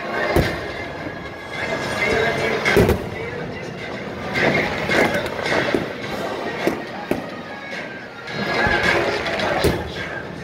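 Massed marching bands playing in a stadium, with several sharp bangs cutting through the music every second or two.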